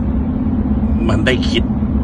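Steady low rumble of car cabin noise from inside a car on the road, with a man's voice speaking briefly about a second in.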